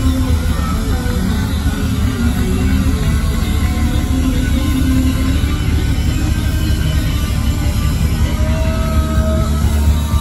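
A live punk rock band playing loud through a festival PA, heard from within the crowd: distorted electric guitars, bass and drums, with a few held notes near the end.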